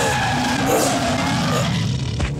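A vehicle skidding through loose dirt with its engine running: one long rough slide that cuts off at the end.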